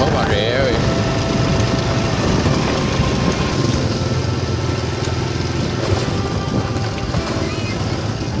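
Motorbike engine running at a steady hum while riding, with wind and road noise over it.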